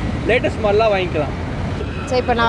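Brief speech over a steady low rumble of outdoor background noise.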